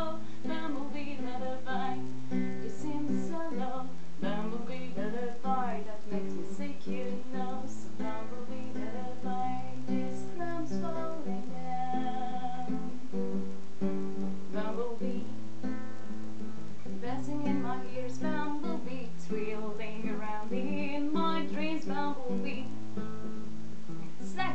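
Nylon-string classical guitar playing a repeating chord and bass pattern, with a woman's wordless singing over it in places.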